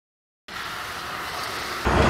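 Dead silence for about half a second, then a steady outdoor rushing noise of wind on the microphone and traffic, which steps up louder just before the end.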